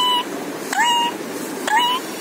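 Pet parakeet calling over and over, three short calls in two seconds, each opening with a click and then rising to a held note.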